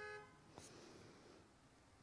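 Near silence with faint room tone; a faint steady pitched tone cuts off about a quarter second in.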